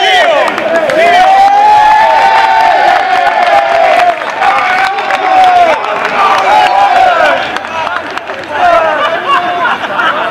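Many men's voices calling and shouting over one another, with one long drawn-out call through the first half and a brief drop in loudness near the end.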